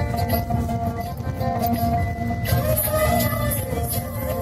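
Music playing from a car stereo inside the cabin, with a low rumble of the moving car beneath it.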